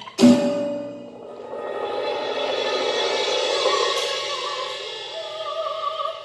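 Live ensemble music: a sharp percussion strike rings on just after the start, then a dense held chord swells up and fades back, with sung notes wavering in vibrato coming in near the end.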